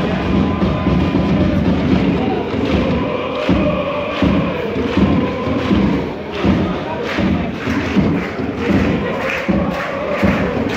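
Football supporters chanting in unison over a steady drum beat, about one and a half beats a second.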